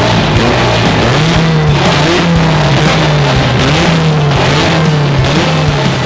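Motorcycle engine being revved up and down several times, its pitch rising and falling about once a second, with rock music playing underneath.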